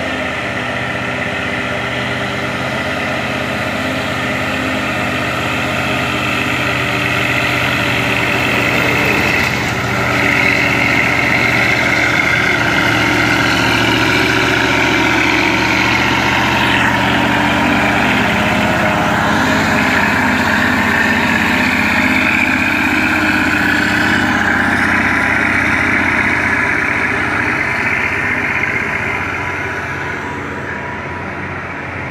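Heavy diesel dump truck's engine labouring slowly up a climb under load. It grows louder as the truck draws close and passes, then fades near the end.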